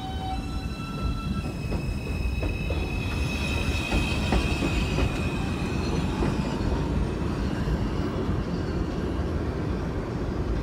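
New York City Subway 2 train pulling out of an elevated station and running away down the track: a steady rumble of wheels on rail with faint clicks over the rail joints, and a high, steady squeal ringing over it through the middle.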